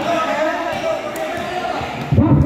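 Indistinct chatter and calls from several players and onlookers at a basketball court, with no single clear voice.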